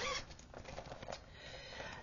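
Soft, faint rustling and crinkling as a fabric project bag is handled and opened.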